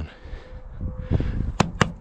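Low rumble of movement with a few soft thuds, then two sharp clicks about a second and a half in, over a faint steady hum.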